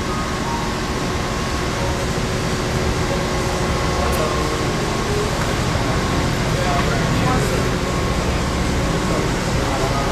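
Steady loud rushing noise on a cruise ship's open deck, with faint hum and scattered distant voices.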